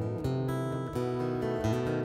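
Steel-string acoustic guitar playing a milonga accompaniment alone between sung verses. It strikes a few chords, roughly two-thirds of a second apart, over a held deep bass note.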